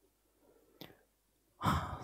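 A woman's breathing between phrases: a brief short breath a little under a second in, then a louder sigh-like breath near the end just before she speaks again, with near silence around them.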